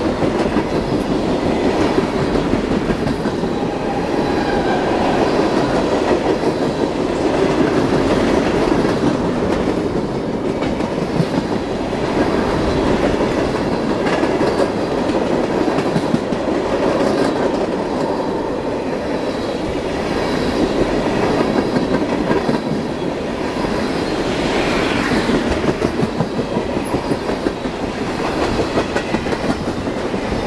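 Freight train tank cars rolling past, steel wheels clicking and clattering over the rail joints over a steady rumble.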